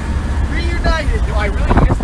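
Short shouts and voices of a few young men calling out wordlessly over a steady low rumble, the loudest call near the end.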